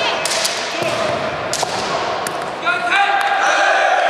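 Bamboo shinai striking each other and the armour in several sharp cracks, with stamping feet on a wooden floor. A fencer's drawn-out kiai shout starts a little before the end.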